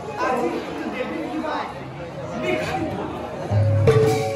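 An Assamese Bhaona actor's voice declaiming on stage, with musical accompaniment under it. A single low drum stroke comes near the end.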